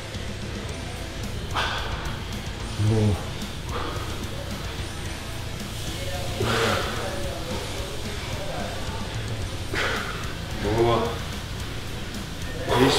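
A man breathing out hard and grunting with effort several times, every few seconds, as he pulls a resistance band through repeated rows, over steady background music.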